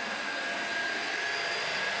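Hoover Air Lift Lite bagless upright vacuum running steadily on carpet: an even rush of air with a steady high whine over it.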